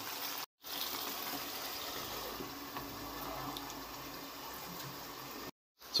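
Creamy korma gravy simmering in a kadai on a gas burner: a steady, soft hiss. It drops out twice for a moment, about half a second in and again near the end.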